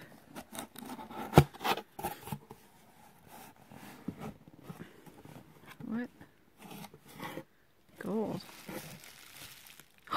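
Cardboard box flaps pulled open and bubble wrap handled: a run of rustling, tearing and crinkling, with a sharp knock about a second and a half in. Short wordless vocal sounds come near the middle and again a little later.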